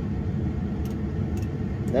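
Ford 6.0 L turbo diesel V8 idling: a steady low rumble.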